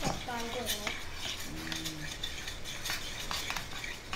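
Metal spoon and spatula scraping and clinking against a steel pan in quick, uneven strokes, stirring a thick besan-and-ghee mixture as it cooks.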